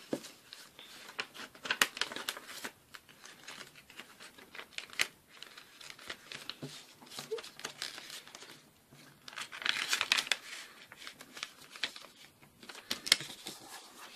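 A sheet of white paper rustling and crinkling as it is folded and its creases pressed down hard by hand, in irregular sharp crackles and swishes. There is a louder spell of rustling about ten seconds in and a sharp crack near the end.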